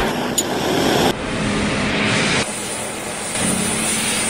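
Glassworker's gas torch flame burning with a steady rushing noise, stepping down in level about a second in and again a little past two seconds.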